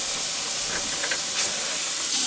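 Steady hiss of water running into the tub of a Montgomery Ward wringer washer.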